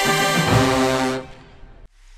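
Marching band brass holding a loud chord, moving to a lower chord about half a second in, then cutting off just over a second in with a short fading echo.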